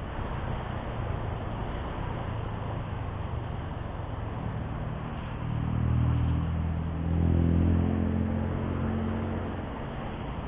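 Motorcycle riding on a city street: steady wind and road noise on the bike-mounted microphone, with a low engine hum that swells louder in the second half.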